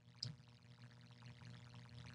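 Near silence: room tone with a faint low hum and one small brief sound about a quarter second in.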